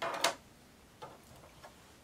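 Tiny plastic sixth-scale figure accessories clicking as they are handled and set down: a quick cluster of sharp clicks right at the start, then a few faint ticks.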